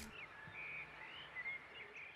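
Faint birdsong: a scattering of short chirps and whistles over quiet outdoor ambience.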